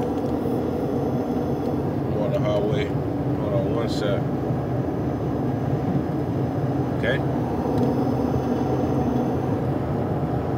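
Steady low rumbling background noise at an even level, with a man's voice saying a couple of short words in between.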